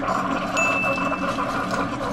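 Keurig single-serve coffee maker brewing: a steady pump hum with water running through into the mug, and a brief high ringing tone about half a second in.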